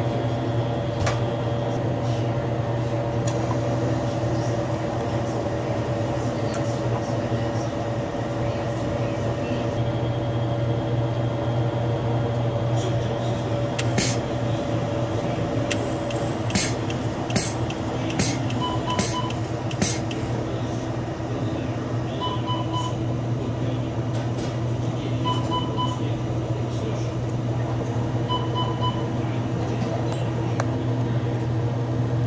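Steady mechanical hum of a Slurpee frozen-drink machine, with a run of clicks and knocks partway through as the cup is filled at the dispenser. In the second half, a short electronic double beep repeats about every three seconds.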